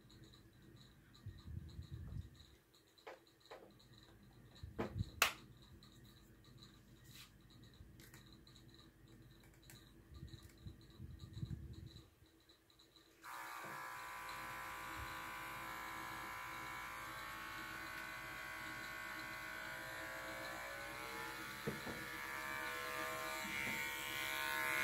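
Faint handling clicks and rustles, then, about halfway through, a Wahl cordless dog-grooming clipper with a freshly oiled new blade is switched on and runs with a steady buzz. Its pitch dips slightly a few seconds before the end.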